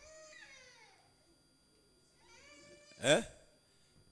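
Faint voices in the room with pitch that falls over the first second and rises again, then a man's loud, brief 'eh?' about three seconds in.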